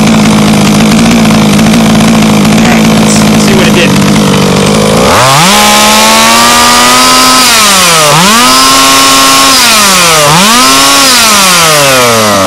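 HPI Baja 5B's two-stroke gasoline engine idling steadily, then revved hard about five seconds in and held high, dropping back and climbing again twice before winding down near the end. The high-speed needle has just been leaned about a sixteenth of a turn.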